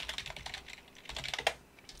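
Computer keyboard typing: a quick run of keystrokes that stops about one and a half seconds in, ending with a louder click.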